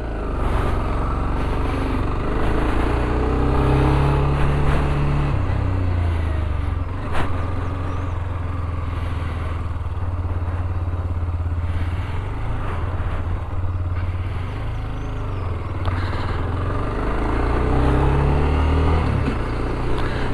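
Dafra Next 300 motorcycle engine running under way and accelerating, its note rising for about five seconds and then dropping at an upshift, holding fairly steady, then rising again and dropping at another upshift near the end.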